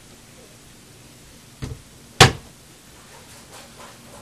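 Wooden cabinet door being shut: a light knock, then a sharp clap about two seconds in as it closes against the cabinet frame, and a few faint taps near the end.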